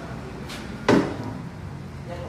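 A single sharp clunk about a second in, with a faint click half a second before it, from the scooter being handled.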